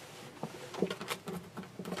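Soft rustling and a few light taps from a quilted fabric panel being lifted, slid and folded over on a table.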